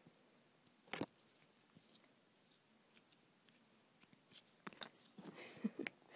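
Near silence with faint handling noise: one sharper tap about a second in, then a few soft clicks near the end.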